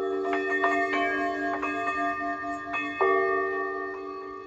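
Hanging metal tubes struck with a mallet, ringing like tubular bells: about half a dozen strikes leave long, overlapping metallic tones. The loudest strike comes about three seconds in, and the ringing fades near the end.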